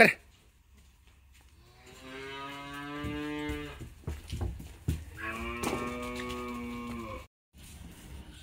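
A brief sharp knock right at the start, then two long moos from cattle, each about two seconds long, with a short pause between them.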